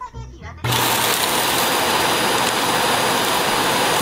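Ecovacs Deebot auto-empty station sucking the dust out of the docked robot vacuum's bin once cleaning is done. A loud, steady rush of suction with a thin high whine starts abruptly under a second in.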